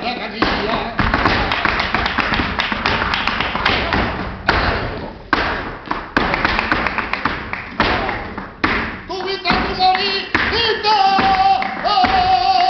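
Live flamenco bulería: a dancer's rapid stamping footwork mixed with shouts of encouragement. About nine seconds in, a singer's voice comes in and holds a long note over it.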